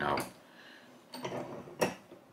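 Light handling noise and then one sharp click near the end, from hands working a Lee Classic Turret reloading press at its shell holder.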